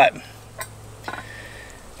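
A few faint metallic clinks from a steel target plate and its hanging clip being handled, one near half a second in and another just after a second in, over quiet outdoor background.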